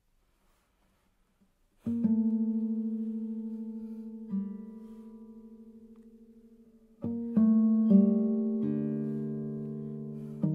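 Near silence for about two seconds, then a nylon-string classical guitar begins a slow passage: a ringing chord held and left to decay, a single note added partway through, and further notes struck one after another near the end.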